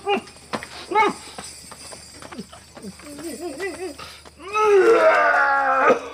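A drunk man retching: short grunting heaves, then from about four and a half seconds a long, loud gagging groan that falls in pitch.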